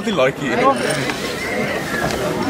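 People's voices close to the microphone, a wavering, laugh-like voice in the first second or so.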